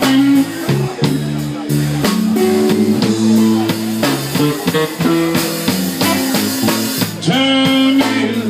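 Live blues band playing an instrumental stretch: electric guitar over electric bass and drum kit.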